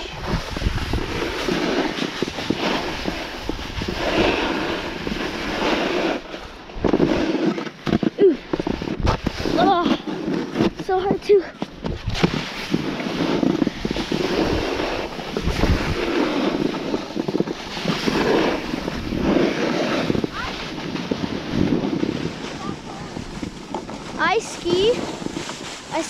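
Snowboard sliding and scraping over packed snow, with wind on the microphone; the noise rises and falls in level through the run.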